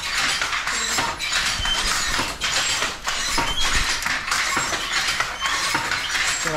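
Wooden jacquard handloom being worked: repeated clacks of the moving loom parts, roughly one to two a second, with short high squeaks from the wooden frame and mechanism.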